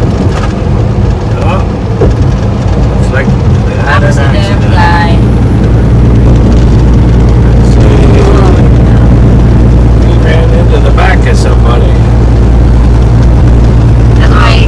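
Inside a semi-truck's cab at highway speed: a loud, steady low drone of engine and road noise, growing a little louder about six seconds in.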